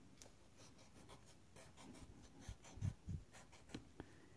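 Faint scratching as the coating is scraped off a scratch-off lottery ticket's bonus-prize spots, with a few soft bumps in the second half.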